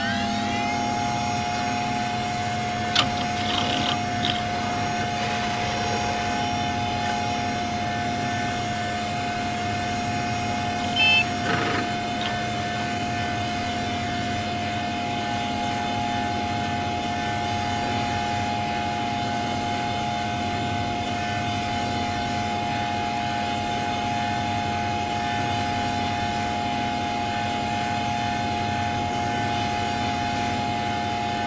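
Electronically processed Windows system sound held as a steady synthetic drone: a few pitched tones sustained without change, with short blips about three and eleven seconds in.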